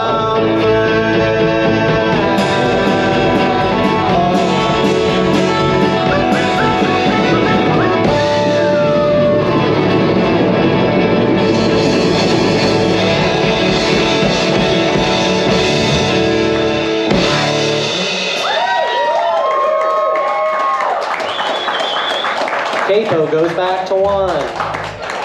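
A rock band playing live with drums, bass, electric and acoustic guitars, keyboard and vocals. About seventeen seconds in, the drums and bass stop and the song thins out to guitar notes and voices.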